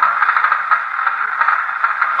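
Steady hiss of radio static with a fine crackle, filling the pause between lines of a radio conversation.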